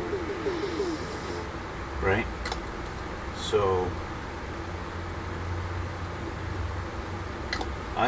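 Short murmured vocal sounds, about two seconds in and again a second later, over a steady low hum. A couple of faint clicks come from plastic model kit parts being handled.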